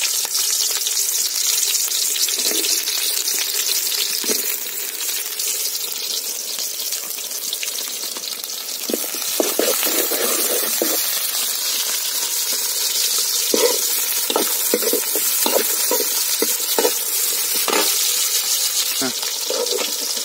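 Sliced onions frying in hot oil in a large metal pot, a steady sizzle. A steel ladle stirs them, with short scraping strokes from about nine seconds in.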